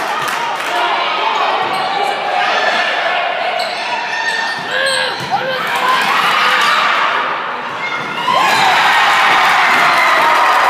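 Volleyball rally in a school gym: the ball being struck, over steady crowd noise and shouts. Crowd cheering swells about eight seconds in as the point ends.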